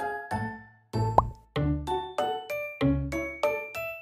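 Cheerful background music of light, bright plucked and mallet-like notes in a steady rhythm. About a second in the music drops out briefly for a short, quick rising 'plop' sound, then resumes.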